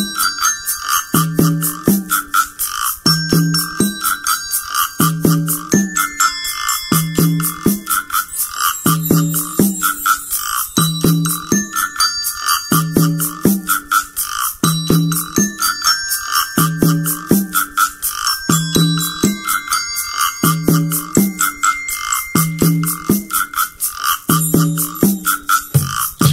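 A piece played on percussion alone: a melody of short ringing notes on tuned desk bells over a fast, even ticking of hand percussion and a low beat that repeats about once a second.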